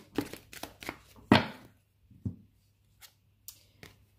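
A deck of oracle cards being shuffled by hand: a quick run of crisp card snaps, with one louder slap of the cards about a second in, then only a few faint clicks.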